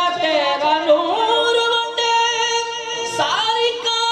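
A man singing a naat, a devotional poem, in a melismatic style: wavering, ornamented notes in the first second, then long notes held steady, with a quick slide in pitch about three seconds in.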